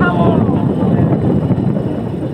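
Moving motorcycle heard from the rider's seat: wind rushing over the microphone with the engine and road noise underneath, a dense rough rumble. A voice is heard briefly at the start.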